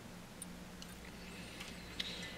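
Faint small handling ticks as glass craft beads are slid one by one onto a length of 25-pound monofilament, over a faint low steady hum.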